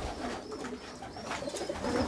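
A flock of racing pigeons cooing softly.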